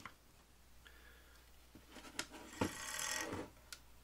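Hands handling a small plywood resistor-load box: a rustling scrape of about a second, with a few sharp clicks, about two seconds in, over a faint steady hum.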